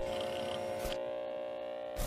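An electronic glitch-style hum: several steady tones held together under static hiss. There is a short crackle about a second in, after which the hiss thins.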